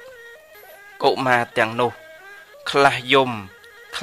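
A monk's voice preaching a Khmer Buddhist sermon in a melodic, sing-song delivery: two wavering phrases after a short pause of about a second.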